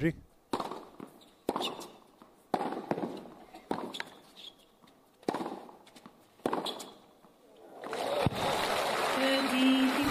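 Tennis rally on a hard court: six sharp racket strikes on the ball, about a second apart. Crowd applause swells near the end as the point is won.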